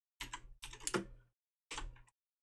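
Keys of a computer keyboard being typed: a short run of keystrokes in three quick clusters, entering a command.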